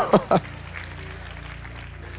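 A soft, steady low keyboard pad held under the pause, with faint held notes above it. The tail end of a man's laugh runs through the first half-second, and a faint crowd haze from the congregation runs beneath.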